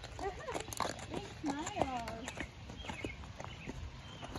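Horse walking on a dirt paddock, its hooves clip-clopping in a slow, uneven walking rhythm, with soft voices talking over it in the first half.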